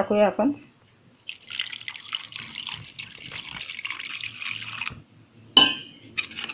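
Water poured in a steady stream from a steel pot onto a bowl of mixed flour, running for about three and a half seconds. Near the end comes a single sharp metallic clink.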